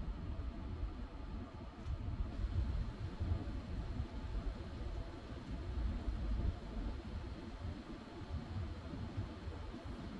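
Road and engine noise heard inside a moving minivan's cabin: a steady low rumble with a soft hiss above it.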